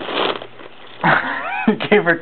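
Paper crinkling and tearing as a cat shreds it with her teeth, loudest in the first half-second. About a second in, a voice starts.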